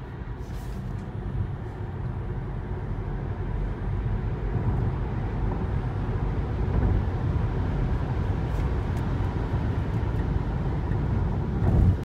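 Cabin noise inside a 2018 Tesla Model 3 RWD under hard acceleration from about 35 to 85 mph: road and wind noise rising over the first few seconds, then holding steady at highway speed. There is no engine note.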